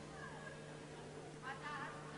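Faint distant voices over a steady low hum, with a short high wavering call about one and a half seconds in.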